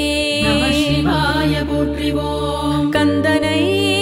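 A female singer chanting a Tamil devotional Shiva hymn in a wavering, ornamented line over a steady low drone accompaniment. The low accompaniment shifts about three seconds in.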